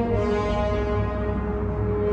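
Orchestral silent-film score playing long, steady held low notes.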